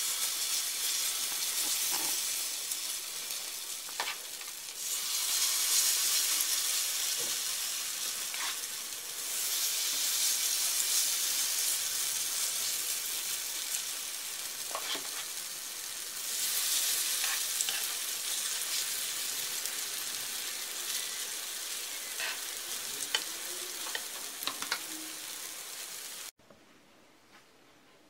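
Potato pancake batter frying in hot oil in a pan: a steady sizzle that swells louder three times as fresh spoonfuls of batter go into the oil, with a few light clicks of a metal spoon against the pan. It cuts off suddenly to near silence about two seconds before the end.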